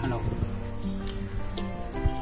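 A steady, high-pitched chorus of insects such as crickets, with soft sustained background music notes beneath it.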